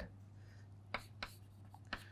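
Chalk writing on a chalkboard: faint scratching with a few sharp taps of the chalk, about a second in and again near the end.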